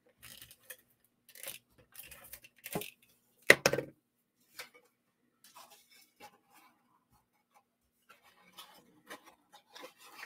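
Black cardstock being handled and shifted on a crafting mat: scattered soft rustles and light taps, with one louder handling noise about three and a half seconds in.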